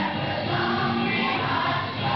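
Children's choir singing together, holding steady notes that change pitch every half second or so.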